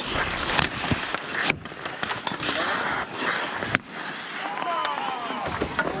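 Skate blades scraping and carving on outdoor rink ice, with hockey sticks clacking in play around the net and one sharp crack about four seconds in. Players shout over the last two seconds.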